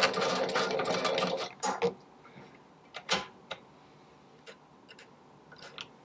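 Chandler CM-591 hand-operated button sewing machine running through its stitch cycle, a dense rapid clatter that stops about a second and a half in as the button is finished. A few scattered clicks follow.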